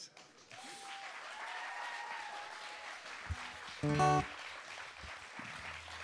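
Audience applauding steadily, with a single guitar note just after three seconds and an acoustic guitar chord strummed about four seconds in.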